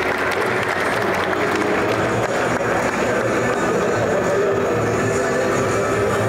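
An audience applauding over background music. The clapping fades over the first couple of seconds while the music keeps going steadily.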